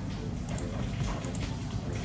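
Steady background room noise with a few faint, irregular clicks.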